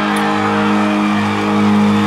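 A live rock band holding one steady, sustained note or chord as the song rings out, with crowd noise underneath.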